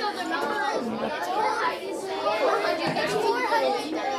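Chatter of many children talking at once, their voices overlapping as the class talks in small groups at their tables.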